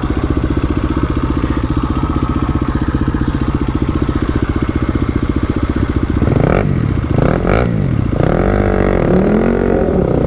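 KTM dirt bike's single-cylinder engine idling with a steady low beat, then, about six seconds in, revved up and down in a series of quick throttle blips while held at the foot of a steep rocky climb with no run-up.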